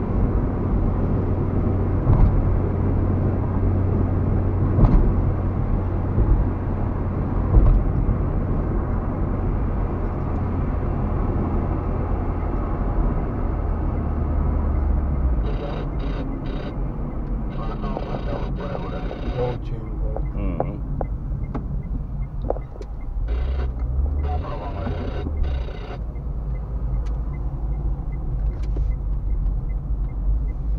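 Road and engine rumble of a moving car heard from inside the cabin, low and steady. It eases about halfway through, with patches of higher hiss mixed in for several seconds.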